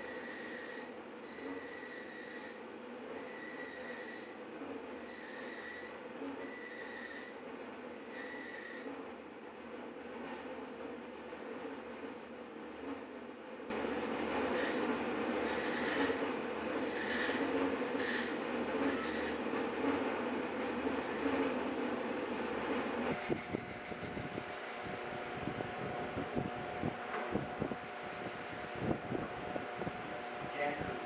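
Bandsaw running and cutting through mahogany, a steady machine noise that gets louder about halfway through. In the last few seconds it gives way to a drill press boring into the wood, a steady whine with a rattle of short knocks.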